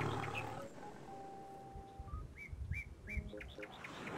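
Bird calls: a single held whistled note, then three quick chirps about a third of a second apart.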